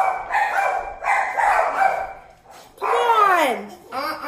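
A pet dog barking a few times, then one long call that falls in pitch near the end.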